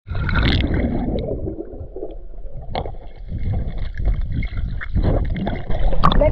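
Muffled underwater sound of pool water churning and gurgling around a submerged camera, with a few sharp clicks.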